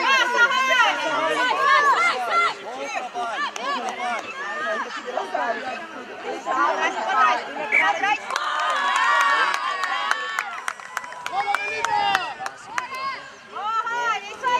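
Several people's voices talking and calling over one another, many of them high-pitched. In the second half a few short sharp clicks cut through.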